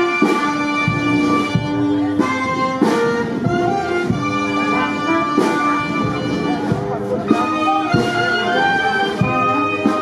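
Music: an ensemble with brass instruments playing a melody of sustained notes.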